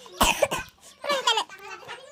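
A person coughs loudly once, about a quarter second in, followed about a second in by a brief bit of voice.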